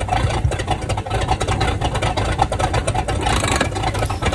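Sterndrive boat engine running steadily out of the water, with water spraying and splattering from the back of a Mercruiser Alpha One Gen Two outdrive. This is the test run of the freshly restored outdrive.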